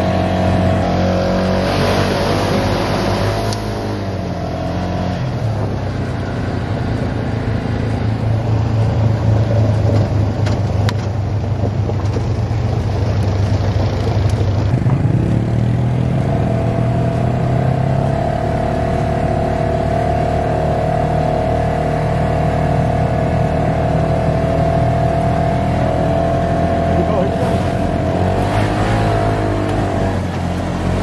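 Side-by-side UTV engine running under way, its pitch steady for stretches; about halfway through it glides up as the vehicle speeds up, then holds a higher steady pitch.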